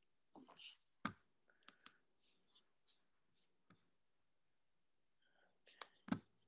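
Near silence with a few faint, scattered computer clicks.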